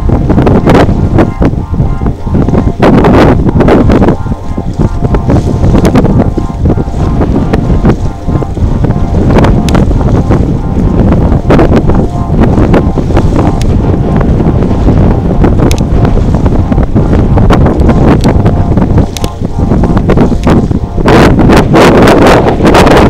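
Loud wind buffeting the microphone: a rumbling rush that surges and dips in gusts, with faint steady tones underneath.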